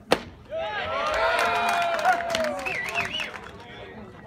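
A single sharp pop as a pitched baseball smacks into the catcher's mitt, followed about half a second later by several people shouting and cheering at once for a couple of seconds, then dying down.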